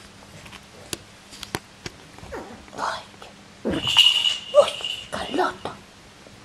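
Havanese puppies play-fighting, giving short growls and yips, loudest about four seconds in, after a few sharp clicks in the first two seconds.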